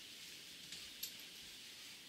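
Quiet room tone with a steady hiss and two faint short clicks, the second, sharper one about a second in.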